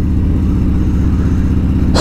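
Harley-Davidson Road Glide's V-twin engine running steadily at cruising speed through an aftermarket D&D 2-into-1 exhaust, with a low, even throb.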